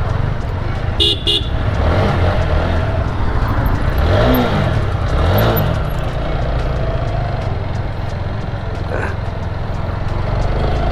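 Motorcycle engine running at low road speed in street traffic, with a short burst of vehicle horn toots about a second in. Around the middle the engine note rises and falls twice.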